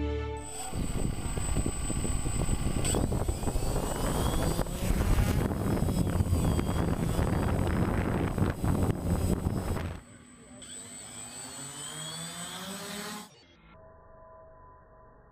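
DJI Phantom quadcopter's propellers whirring under heavy wind noise on the onboard GoPro's microphone, loud and rough for the first ten seconds. It then turns quieter, with the rotors' whine rising and falling in pitch, and cuts off suddenly near the end.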